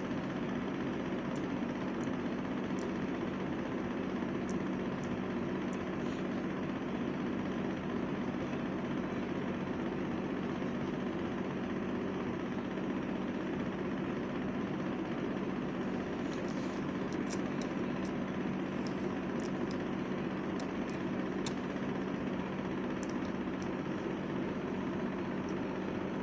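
Steady background hum and hiss with a low, even tone, like a fan or motor running; a few faint ticks come in the second half.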